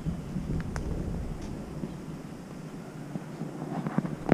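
Low outdoor rumble that fades away over the first couple of seconds, with a few faint scattered clicks.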